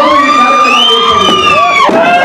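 A man's voice through a microphone and loudspeakers holding one long drawn-out shout for nearly two seconds, rising slightly at the start and dropping off at the end, with crowd noise beneath.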